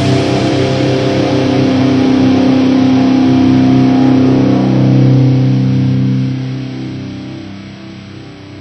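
Schecter Hellraiser C1 electric guitar through a Randall RG75D amp, a chord struck and left to ring out, then fading over the last couple of seconds.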